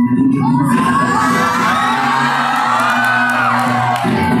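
Dance music playing, with an audience of young people cheering and whooping over it from about half a second in.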